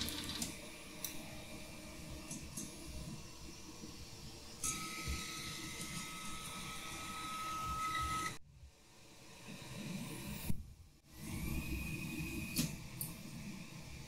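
Stepper motors of a home-built 5-axis 3D printer whining as its axes move. A steady whine holds for a few seconds from about a third of the way in and cuts off abruptly. A second whine glides up and holds near the end.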